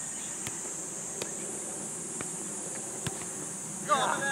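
Steady high-pitched drone of a cicada chorus, with a few faint knocks of a football being kicked on grass. A voice starts right at the end.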